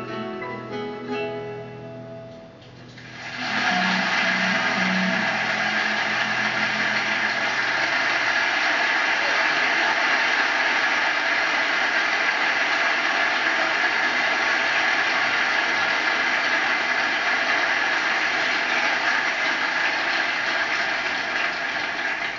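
A live orchestra with plucked strings plays the last notes of a song. About three seconds in, a large audience breaks into steady applause.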